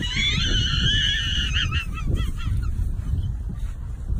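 A dog's long, high-pitched whining cry lasting nearly two seconds, followed by a few short wavering yelps, over wind rumble on the microphone.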